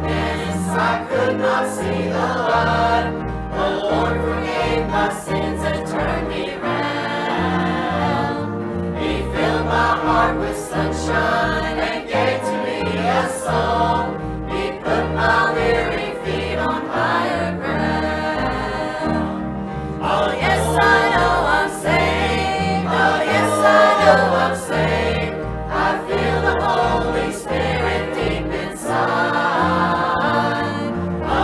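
Church choir singing a hymn together, with an instrumental accompaniment whose bass line steps from note to note beneath the voices.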